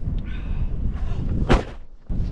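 Gusting wind buffeting the microphone as a steady low rumble, with one sharp knock about one and a half seconds in.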